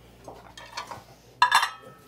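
Wine glasses and plates being set out on a dining table, with light knocks of tableware and one sharp clink about a second and a half in.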